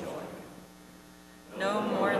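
Spoken voices trail off, leaving a steady electrical hum from the sound system for about a second, then speaking resumes near the end.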